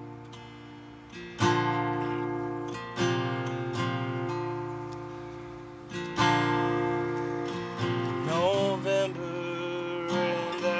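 Acoustic guitar played solo: chords struck a few seconds apart and left to ring out and fade between strikes.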